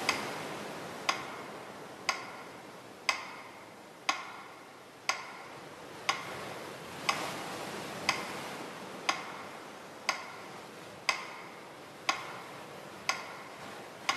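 Steady clock-like ticking, one sharp tick each second, over a soft hiss that slowly fades.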